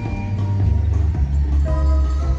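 Marimba ensemble playing live, with notes held in the rapid rolls typical of marimba, and higher notes coming in near the end.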